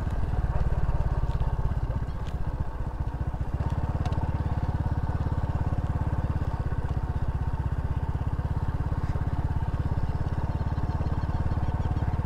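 Small motor scooter engine running at low speed, a steady low putter. Its note deepens a little about three and a half seconds in.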